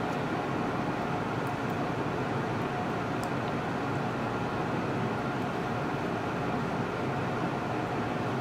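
Steady, unchanging background hum and hiss of room tone, with no distinct events.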